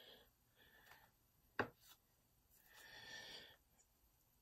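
Near silence: room tone, with a single sharp click about one and a half seconds in and a faint soft hiss a little later.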